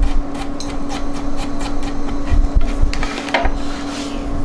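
A kitchen knife chopping salad leaves and radish on a cutting board: a quick, irregular run of sharp knife strikes on the board.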